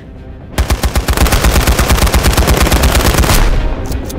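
Action-film gunfire: a long, loud burst of rapid shots, starting suddenly about half a second in.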